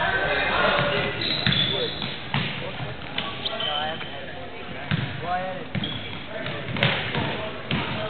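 Basketball bouncing on a hardwood gym floor during a game, a handful of irregular knocks, with short high sneaker squeaks and indistinct shouting voices echoing in the gym.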